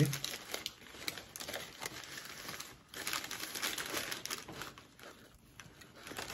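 Paper food wrapper crinkling and rustling as it is handled, in irregular crackles that die down near the end.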